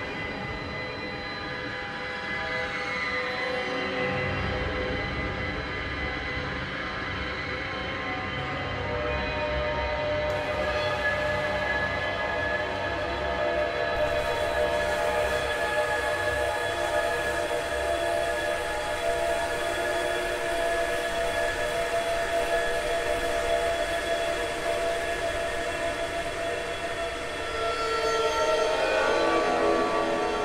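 Heavily processed bowed cymbals, sampled and played back through a software instrument: a dense, sustained, dissonant bed of many held ringing tones. A low rumble comes in about four seconds in, and the whole texture swells louder near the end.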